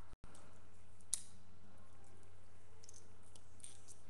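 A single sharp click about a second in, over a steady low electrical hum, with a few faint ticks later.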